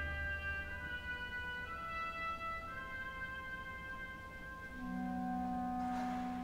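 Contemporary chamber music for wind ensemble: several woodwinds hold long, steady overlapping notes that shift pitch one at a time in a slow-moving chord. A low percussion rumble dies away about a second in, and low held notes come in near the end.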